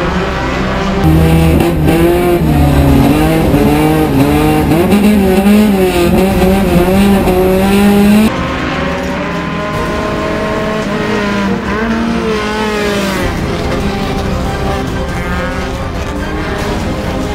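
Dirt-track race car engines revving hard, the pitch climbing and dropping with throttle and gear changes. About eight seconds in the sound cuts abruptly to a somewhat quieter engine note that keeps revving up and down.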